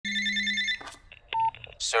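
A telephone rings once in a short electronic trill lasting under a second, then cuts off. A brief steady beep follows, and a man's voice begins near the end.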